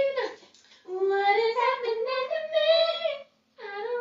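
A woman singing a tune in long, held notes that climb slowly in pitch, in two phrases with a short break about three and a half seconds in.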